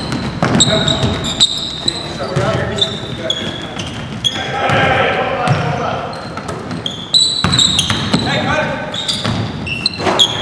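Basketball game on a hardwood gym floor: sneakers squeak in short, high chirps again and again, and the ball bounces, with the sound echoing in the hall.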